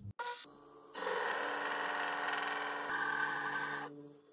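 Homemade disc sander running, with a small steel part held against the spinning disc and being ground. It is a steady sound that starts about a second in and stops just before the end.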